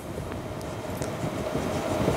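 Steady background rumble and hiss with a faint steady hum, growing slightly louder.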